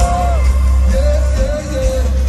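Live concert music played loud over a stadium PA: a sung vocal line over heavy, steady bass, heard from within the crowd.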